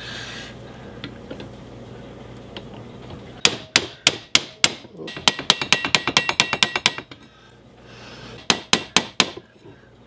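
Small hammer tapping metal pins through the wooden handle scales on the tang of a large cleaver, setting the handle pins. After a few quiet seconds comes a run of sharp taps that quickens to several a second, with a metallic ring. A short pause follows, then four more taps near the end.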